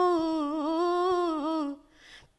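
A woman singing a Bhojpuri folk song without accompaniment, holding one long note with small wavering ornamental turns, which ends shortly before the close.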